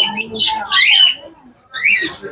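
Birds squawking: several high, gliding calls in the first second, a short pause, then another call near the end.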